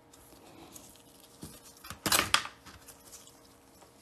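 Small handling noises as gloved hands work a plastic nail tip and small manicure tools on a marble table: faint rustles, then a short cluster of light clicks and scrapes about two seconds in.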